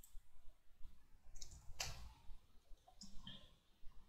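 Faint clicks from a computer mouse and keyboard: a handful of separate clicks, the clearest about two seconds in.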